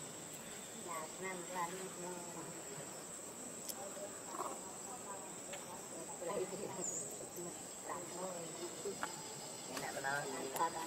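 Steady high-pitched drone of insects, such as crickets or cicadas, with faint short snatches of voice now and then.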